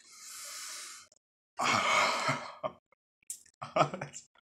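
A man's hissing breath through the teeth for about a second, then a louder breathy sigh, the reaction of a mouth burning from extremely hot chicken wings; a few short mouth clicks follow near the end.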